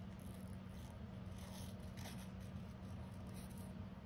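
Quiet handling of paper stickers and small scissors: a few faint rustles and light clicks over a steady low hum.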